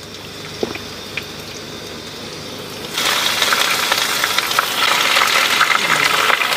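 Raw mutton pieces dropped into a kadai of hot oil and browned onions, setting off loud sizzling and crackling that starts suddenly about halfway through. Before that there is only a low hiss from the pan and a couple of small clicks.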